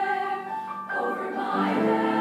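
A girls' choir singing held chords in several parts; a new phrase comes in about a second in and the sound grows fuller and louder near the end.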